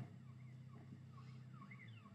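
Near silence, apart from a faint siren wailing in quick rising-and-falling sweeps, about three or four a second, over a low steady hum.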